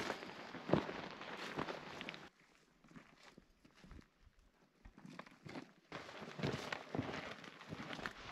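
Faint footsteps crunching on rocky, gravelly ground, broken by a near-silent stretch of about three seconds in the middle.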